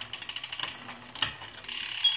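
Road bike drivetrain with a SRAM Red eTap groupset turned by hand on a stand, the chain on the 53-tooth big ring: a rapid series of mechanical clicks from the chain and freehub, turning into a steadier whir near the end.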